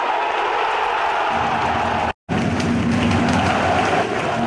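Ice hockey arena crowd cheering and clapping after a goal, a dense roar of many voices and hands. A low steady tone joins about a second in, and the sound drops out completely for an instant about two seconds in.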